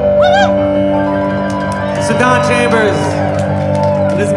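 Live music: a keyboard holds a steady sustained chord, with short sliding notes above it about a second in and again about halfway through.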